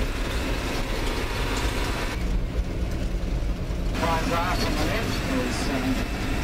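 Hino four-wheel-drive coach driving on a dirt road, heard from inside: a steady engine and road rumble. Faint voices come in about four seconds in.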